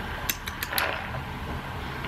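Ice cubes clinking against a drinking glass as a straw stirs the drink: a handful of quick, sharp clinks in the first second.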